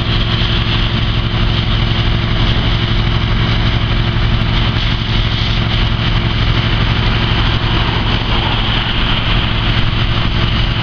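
Parked fire truck's engine running steadily with a low drone, and a steady hiss over it from a fire hose spraying water onto rubble.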